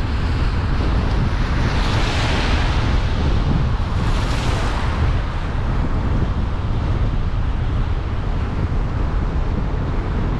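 Wind buffeting the microphone from a moving car, a steady low rumble. About two seconds in, a hiss of tyres on wet pavement swells and fades as an oncoming car passes.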